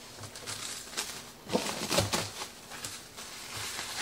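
Plastic cling film crinkling and rustling in irregular bursts as a cake layer is wrapped in it by hand.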